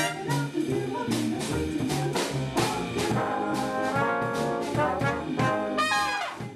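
Swing big band playing, its brass section with trumpets to the fore over a steady drum beat.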